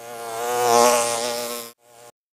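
A steady, insect-like buzzing drone, probably a bee or fly buzz sound effect. It swells to its loudest about a second in, cuts off near the end, and returns briefly.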